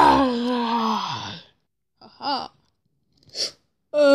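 A person's voice gives a long wordless cry that falls in pitch and lasts about a second and a half. About two seconds in there is a short wavering vocal sound, and near the end a brief breathy puff.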